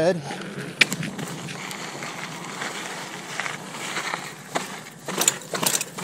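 2019 Giant Stance 2 mountain bike rolling: steady tyre noise over pavement and then dirt, with sharp clicks and rattles from the bike over bumps, a cluster of them near the end.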